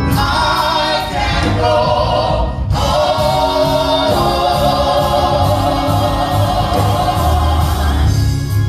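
A small gospel vocal group singing in harmony with amplified microphones. After about the first third, a long chord is held steady to the end.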